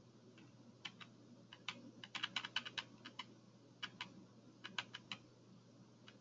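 Faint typing on a computer keyboard: scattered key clicks with a quick run of keystrokes around two to three seconds in, over a low steady hum.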